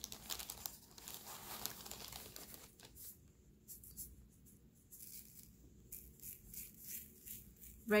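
A plastic zip-top bag of kosher salt crinkling as salt is scooped out of it, for about the first three seconds. Then a faint, scattered patter of salt grains sprinkled from a small cup onto paper.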